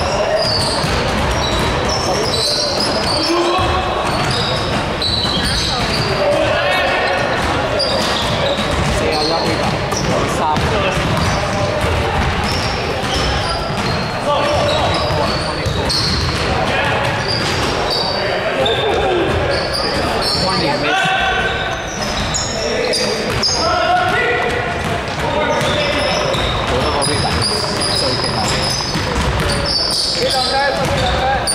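Pickup basketball game on a gym's hardwood floor: a ball bouncing, short high sneaker squeaks, and players' indistinct shouts and chatter, all echoing in the large hall.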